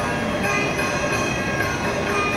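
Background music with held notes and a dense, steady accompaniment.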